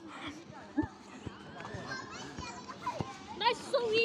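Children's voices calling and shouting from a distance during outdoor play, with a nearer voice near the end and a few soft knocks.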